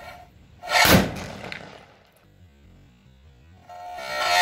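Music from the edit: a brief pitched sting, then a sudden loud hit about a second in that dies away over the next second.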